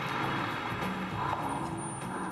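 Music from a TV commercial's soundtrack, with a car driving by.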